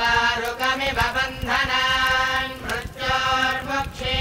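Hindu priests chanting Vedic mantras together in long, drawn-out phrases with short breaks between them.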